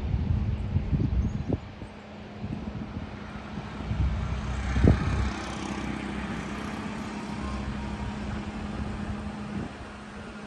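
A road vehicle passing: its sound swells around the middle and fades, over a steady low hum. Low gusts of wind rumble on the microphone at the start and again just before a single thump near the middle.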